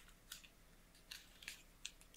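Near silence with a few faint, short crinkling clicks, spread through the two seconds, as a foil sachet of phosphate reagent powder is opened.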